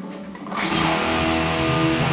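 A short click, then about half a second in a distorted electric guitar comes in loud with a dense goregrind riff that keeps going.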